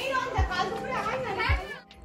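Voices of several people talking in the background over music, with a low beat thumping about once a second.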